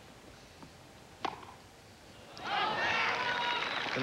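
A tennis racket strikes the ball once, sharply, about a second in. From about halfway through, the crowd breaks into loud cheering and applause at the end of the point.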